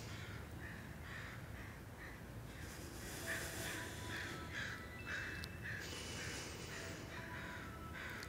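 Faint harsh bird calls, repeated in three short runs of several calls each, with a few thin whistled tones from other birds between them.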